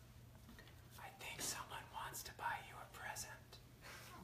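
A man speaking very softly, close to a whisper, for about two and a half seconds.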